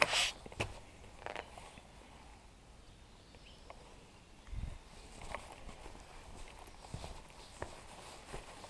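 Sparse, irregular footsteps on wet stone paving: light scuffs and clicks with a couple of soft low thuds. A brief rustle comes right at the start.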